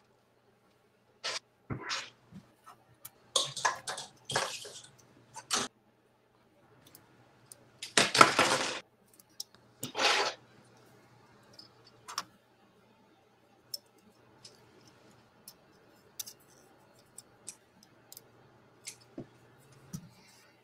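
Hard plastic model-kit parts and runners being handled on a desk: scattered sharp clicks and short rattles, with a longer rattling burst about eight seconds in and another about ten seconds in.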